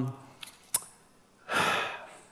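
A man drawing a breath, a breathy rush about half a second long near the end, after a couple of small mouth clicks.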